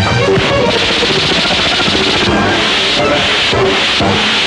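Film fight-scene soundtrack: background score music under loud sound effects, with three rushing, hissing bursts about a second long each, starting near the end of the first second, and some hits.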